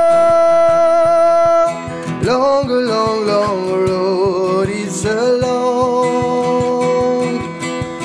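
Acoustic guitar strummed in a steady rhythm under a man singing a folk song: one long held note for the first second and a half or so, then a drawn-out line that slides and wavers in pitch.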